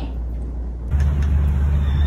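A quiet low hum, then about a second in a louder steady low rumble starts abruptly, with faint hiss above it.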